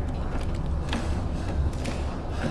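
Film sound effects for a robot walking: its mechanical joints creak and click, with two sharper clicks about a second apart, over a deep steady rumble.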